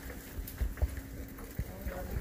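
Footsteps of several people walking along a corridor: a handful of short, irregular steps over a faint steady hum.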